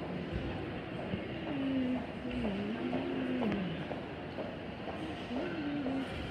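Fountain jet shooting up and falling back into its pool: a steady rush of water.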